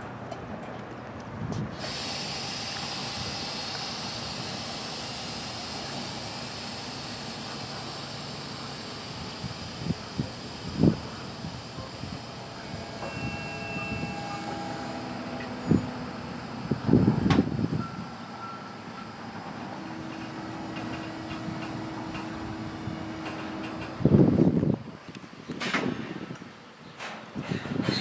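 Loaded open hopper cars of a CSX rock train rolling past: a steady rumble of steel wheels on rail with a high hiss, broken by repeated clanks and thumps from the passing cars, loudest near the end, and a few brief squeals.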